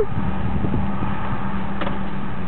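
Steady car cabin noise from inside a moving or idling car: engine hum and road rumble with a faint steady low hum.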